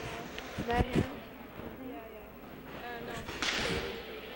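Ice hockey rink during a stoppage in play: scattered players' voices, a couple of sharp knocks about a second in, and a short hissing skate scrape on the ice a little after three seconds.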